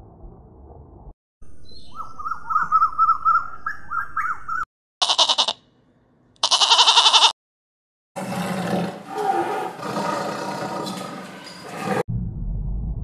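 A sequence of animal calls: a run of quick chirps, then a sheep bleating twice, then a tiger growling and roaring loudly.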